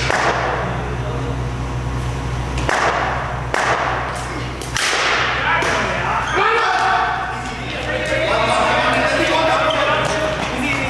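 A few sharp, echoing knocks in the first five seconds as a taped tennis ball is bowled and struck by a cricket bat on a concrete floor, followed by several players shouting in the hall.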